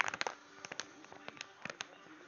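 Faint, scattered short clicks and ticks, a few more in the first half.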